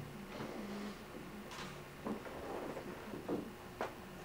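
Quiet room with a faint low hum and several soft, short taps and clicks, the clearest about a second and a half in and just before the end.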